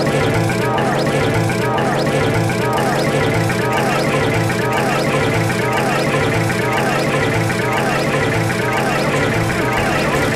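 Cartoon soundtrack heavily layered and processed into a dense, continuous wash of music and voices blurred together, with swooping pitch glides repeating a little more than once a second.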